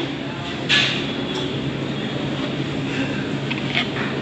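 Buffet dining-room background: a steady hum with indistinct voices behind it, and a short clink or scrape a little under a second in.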